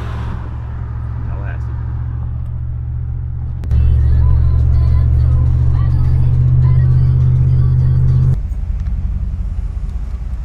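Pickup truck engine and road noise droning steadily inside the cab while driving. About four seconds in it suddenly gets louder for some five seconds, then drops back to the lower drone.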